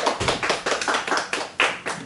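A small audience clapping by hand: scattered, uneven claps from a few people rather than a full applause roar.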